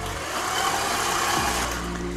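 Electric stand mixer running steadily, its beater mixing vanilla into creamed butter and brown sugar.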